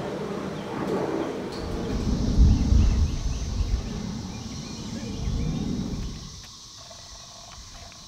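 A steady, faint, high insect chorus of Brood XIX periodical cicadas. Low rumbling, most likely wind on the microphone, comes in through the middle of it.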